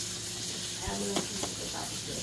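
Steady background hiss with a few light clicks, and a brief faint voice-like sound about a second in.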